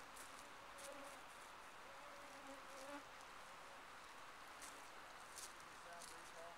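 Faint, wavering whine of mosquitoes in flight, coming and going as individual insects drift nearer and away, with a few faint clicks.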